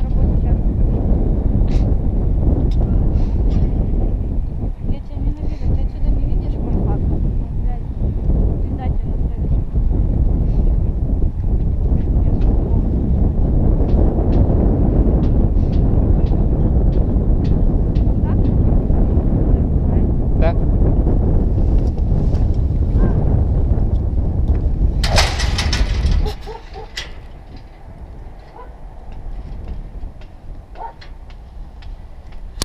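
Wind buffeting a helmet camera's microphone, a steady low rumble. Late on it is broken by a loud burst lasting about a second, and then the wind noise drops off suddenly to a quieter hiss.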